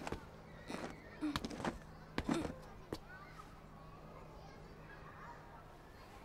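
A few light knocks and two or three short vocal sounds in the first half, then quiet with a faint steady low hum.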